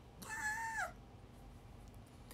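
A long-haired white cat gives one meow, held while being cradled in someone's arms, holding steady and then falling in pitch at the end.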